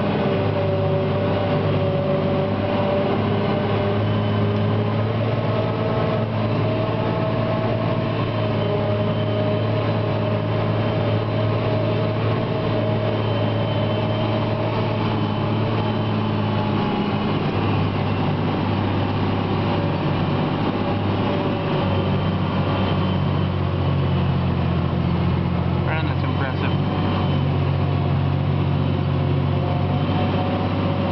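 John Deere 4655 tractor's six-cylinder diesel and the PTO-driven JF FCT1355 forage harvester running under load while chopping grass silage, heard from inside the tractor cab. It is a steady drone with a whine, its pitch shifting slightly a couple of times.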